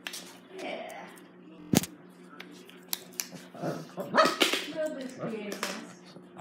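Small dogs barking and yelping, with a cluster of rising yelps in the second half. A single sharp knock comes just before the two-second mark.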